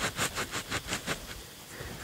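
Gloved hands scraping and rubbing dry soil around a wooden trip stick to bed it in beside a buried trap's jaw: a quick, even run of scrapes, about five a second, that dies away about a second and a half in.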